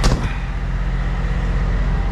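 Volvo VNL semi truck's diesel engine idling with a steady, even low pulse. A single sharp knock comes right at the start.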